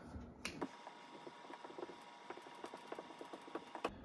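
Dry-erase marker writing a line of symbols on a whiteboard: a run of faint, quick taps and scratches.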